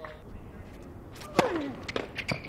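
Tennis rally: a racket strikes the ball about one and a half seconds in, with the player's short falling grunt on the shot, and a ball bounce follows near the end.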